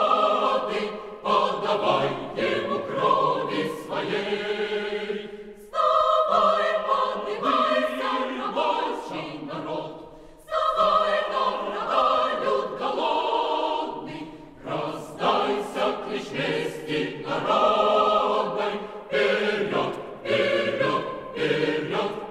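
Choir singing a Russian revolutionary song in long phrases, with short breaths between them about six and ten seconds in.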